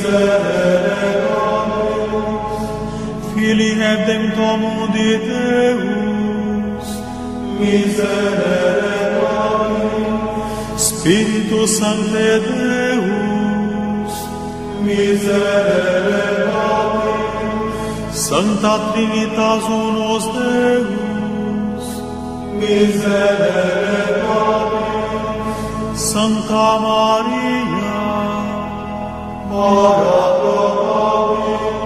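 Devotional rosary prayer chanted in song, sung phrases over a steady low drone. A fresh phrase starts every three to four seconds.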